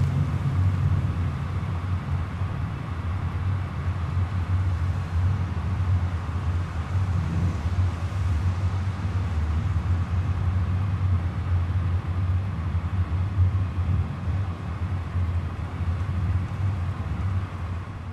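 Steady low rumble of a car driving at an even pace, heard from inside the cabin.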